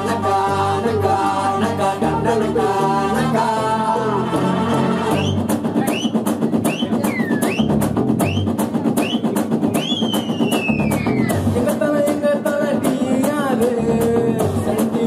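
A man singing into a microphone through PA speakers over a backing track with drums. About five seconds in the voice stops for an instrumental break: a high lead line of short repeated swoops and one long falling glide over a fast beat. The singing comes back near the end.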